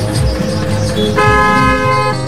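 Background music with a steady beat. A little over a second in, a held, horn-like tone sounds for just under a second.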